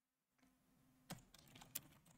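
A few faint computer keyboard keystrokes against near silence, two of them standing out, about a second in and again near the end.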